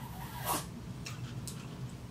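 A short slurp of hot cocoa sucked up through a Tim Tam biscuit used as a straw, about a quarter of the way in, followed by a couple of faint clicks.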